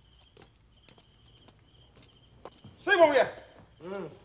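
Two short vocal cries from a man, each falling in pitch: a loud one about three seconds in and a weaker one near the end. Before them it is quiet apart from faint clicks and a faint high chirping tone that comes and goes.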